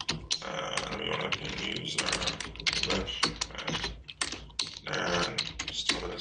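Computer keyboard typing: a fast, irregular run of key clicks with a few short pauses.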